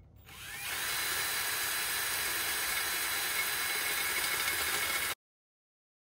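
Cordless drill spinning up and boring steadily into a plastic part, throwing off spiral plastic shavings. It runs for about five seconds, then cuts off suddenly.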